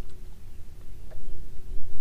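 Wind buffeting the microphone over open water, with a faint steady hum and a few faint clicks.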